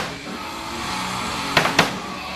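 Live rock band music: a sustained chord holds, then two loud drum strikes land close together near the end.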